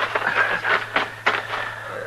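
Short scuffs and knocks, about five of them, from a radio drama's sound effects of a man being pulled to his feet. A steady low hum from the old recording runs underneath.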